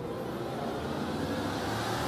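A noisy whoosh sound effect that swells steadily louder and brighter, part of an animated outro, with no clear musical notes.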